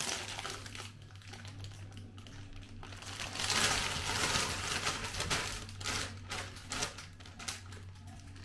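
Plastic packaging of a bag of casserole vegetables crinkling and rustling as it is handled and emptied, with scattered small clicks and knocks, loudest in the middle few seconds. A low steady hum runs underneath.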